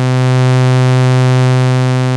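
Sawtooth wave from a Livewire AFG analogue oscillator, run through the Erica Synths Fusion tube VCO mixer's valve saturation. It is a steady, low buzzing tone with a full stack of overtones, easing slightly in level near the end.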